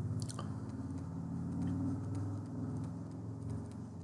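Stylus writing on a tablet screen: faint scratches and light taps as the pen strokes out words, over a steady low electrical hum.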